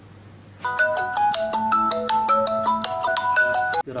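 Redmi Note 6 Pro smartphone ringing for an incoming call: a melodic ringtone of quick, bright notes. It starts about half a second in and is cut off suddenly just before the end.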